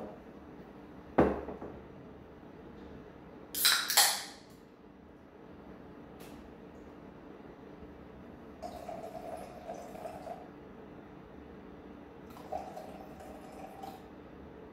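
A hard knock on the counter about a second in, then a beer can cracked open with a loud hiss around four seconds in. Later the beer is poured from the can into a glass in two runs, the second one near the end.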